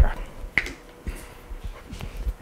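A single short, sharp click about half a second in, then quiet room tone with a few faint low thumps.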